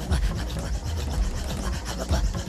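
Inuit throat singing used as a soundtrack: a fast, rhythmic rasping of breath pulsed in and out, over a low hum.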